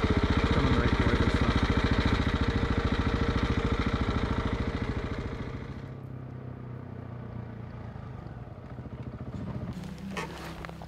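Adventure motorcycle engine running close by with a rapid, even throb, fading away from about halfway through. A quieter, more distant motorcycle engine follows and grows a little louder near the end.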